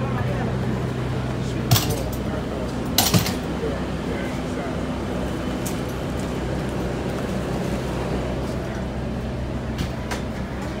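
Inside a 2012 New Flyer C40LF CNG city bus: the natural-gas engine drones steadily under the cabin noise, with two sharp knocks about two and three seconds in.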